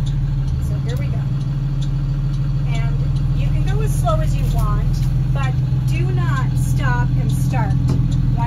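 School bus engine running steadily as the bus pulls slowly forward, heard from inside the cab as a low, even hum. Short falling tones repeat above it from about three seconds in.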